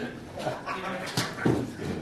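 Indistinct background voices in a card room, with a couple of short sharp clicks about a second in and again shortly after.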